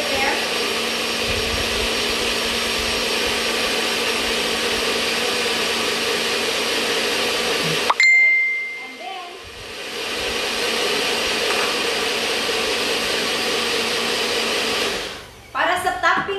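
NutriBullet personal blender running steadily as it blends a liquid shake mix with no ice yet. It cuts out about halfway with a brief ringing tone, starts again a second or two later and runs until shortly before the end.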